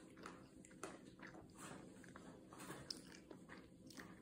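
Faint chewing of a frosted sugar cookie, with soft, irregular crunching clicks.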